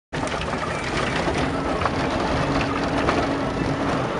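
A vehicle driving over a bumpy dirt track, heard from inside the cabin: steady road and running noise with scattered rattles and knocks from the rough ground.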